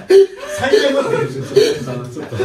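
Several men laughing together, with a loud burst of laughter a fraction of a second in.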